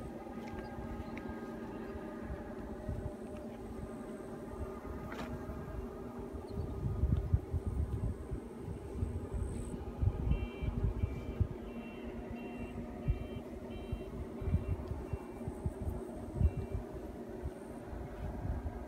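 A steady, distant engine-like hum with wind gusting on the microphone. About halfway through, a run of short, high double beeps sounds roughly twice a second for several seconds.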